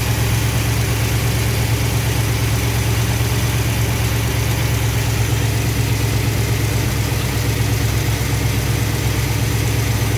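Chrysler V8 engine with a Carter Thermoquad four-barrel carburetor idling steadily at about 1,000 rpm, the idle speed easing down slightly as it is backed off during idle tuning.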